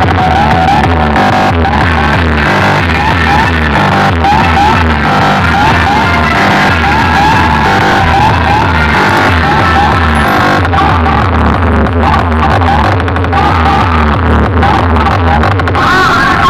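Very loud electronic DJ dance music with a heavy pulsing bass beat, played through a large DJ box sound system of stacked horn speakers and bass cabinets.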